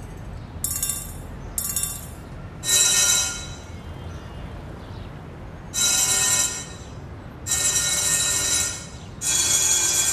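An animation sound effect: five short, high, hissy bursts with a faint ringing tone in them. Each lasts from about half a second to a second and a half, and they come a second or two apart.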